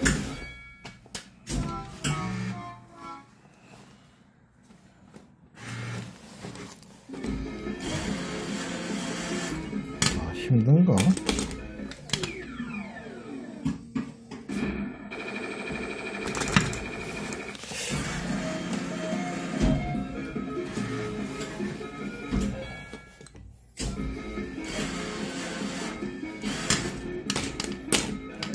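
Arcade ambience: electronic music and jingle-like sound effects with voices in the background, broken by scattered clicks.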